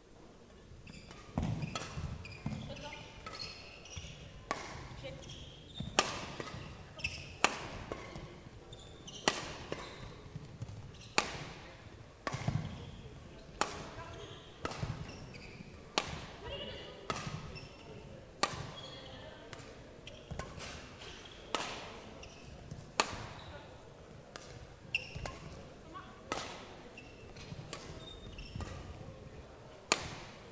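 A long badminton rally: racket strings striking the shuttlecock about once a second, each hit a sharp crack, starting about a second and a half in, with court shoes squeaking on the floor between shots, in a large, echoing sports hall.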